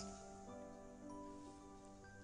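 Quiet, soft background music from a film score: sustained held notes, with a new higher note coming in about halfway through.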